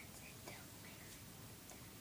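Faint whispering, a few short soft sounds in the first second, over low steady hiss.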